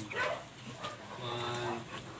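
Dog vocalising softly, with a brief faint whine in the second half.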